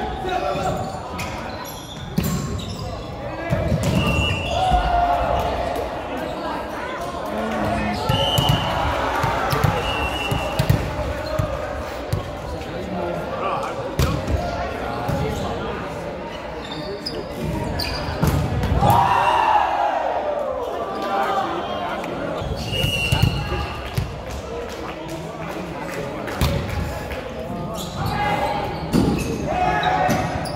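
Indoor volleyball rallies in a gym: the ball is struck sharply again and again in serves, passes, sets and spikes, with short high squeaks and players shouting calls, all echoing in the large hall. The shouting is loudest a little after the middle.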